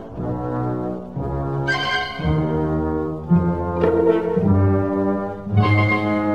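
Symphony orchestra playing sustained, overlapping chords in the low and middle register, the notes shifting every second or so, in a 1956 radio broadcast recording.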